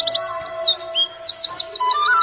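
A bird calling in quick trills of repeated falling high notes, about a dozen a second: a run at the start, a few single slurred chirps, then another run near the end.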